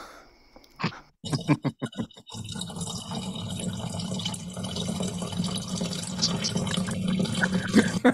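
A gross-out liquid sound effect: a few sharp clicks, then a continuous wet, watery gush like a toilet flush that grows a little louder toward the end, and that on closer listening is something horrific.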